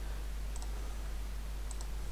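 Two pairs of faint computer mouse clicks, about a second apart, over a steady low electrical hum and hiss.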